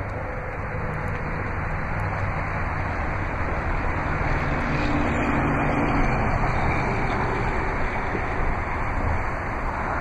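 Steady road-traffic noise with a low vehicle hum, swelling a little in the middle and easing off near the end.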